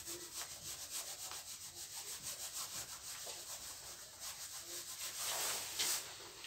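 Whiteboard eraser rubbing back and forth across a whiteboard in quick repeated strokes, wiping off marker writing.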